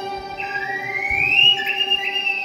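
Traditional Xinjiang (Uyghur) instrumental ensemble playing: a high bowed-string line slides smoothly up over about a second, holds, then begins to slide back down, over steady held lower notes.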